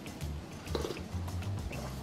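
Soft background music with a repeating bass line, over a faint sip of broth from a metal spoon.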